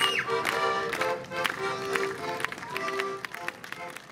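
Accordion playing a folk tune, with sharp taps keeping the beat, fading out near the end.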